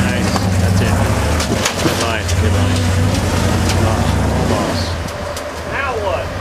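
Rock crawler buggy's engine running steadily under load as it climbs a vertical rock ledge, dropping off about four and a half seconds in. Scattered sharp knocks are heard throughout.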